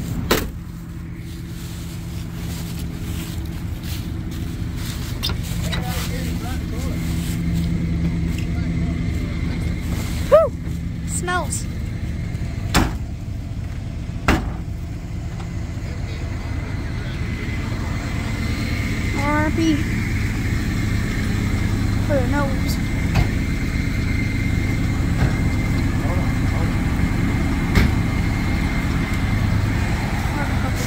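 A vehicle engine idling steadily. A sharp knock at the very start as an SUV's rear hatch is shut, then a few more knocks between about ten and fifteen seconds in.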